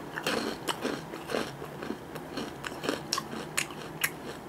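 A person chewing a crunchy coated peanut snack ball (Orion Ojingeo Ttangkong, wasabi-mustard flavour) close to the microphone, with irregular crisp crunches throughout.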